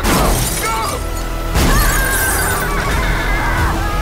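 A gunshot into a car with glass shattering at the start, then a second sudden loud hit about a second and a half later, over music.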